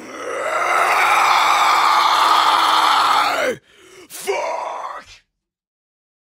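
Harsh metalcore screamed vocal: one long roar held for about three and a half seconds, then a shorter rough scream after a brief gap, cutting off to silence about five seconds in.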